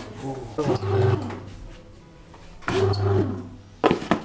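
Tefal Dual Home Baker bread maker's motor running in short bursts of about half a second, roughly every two seconds, each with a sharp start; a sharp click near the end.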